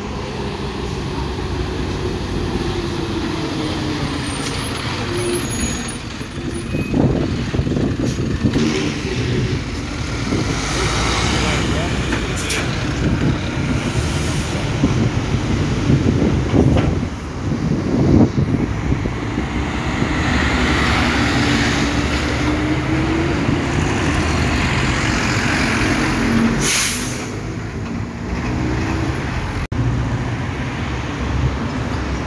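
Road traffic: city buses and cars driving past, bus engines running with their pitch rising and falling. Two short air-brake hisses, one about midway and one near the end.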